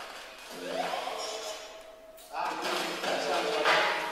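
A man's voice amplified through a microphone in a large hall, in long drawn-out phrases; it grows louder and fuller about two seconds in.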